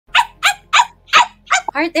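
A woman laughing in five short, evenly spaced bursts, about three a second, before she starts to speak near the end.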